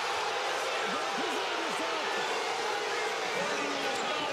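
Steady noise of a large arena crowd, with single voices shouting out of it here and there.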